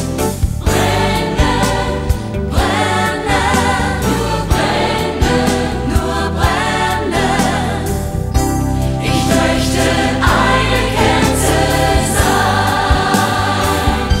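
A studio choir singing a Christian Christmas song in sustained chords over instrumental accompaniment with a steady beat.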